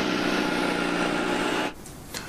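A steady mechanical drone with a low, constant hum, cutting off abruptly near the end.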